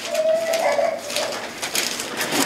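Thin Bible pages rustling and flicking as they are turned by hand, with a short, steady hoot-like tone in the first second.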